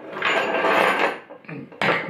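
Handling noise as parts are moved about on a tabletop: a rustling scrape lasting about a second, then a single sharp knock near the end.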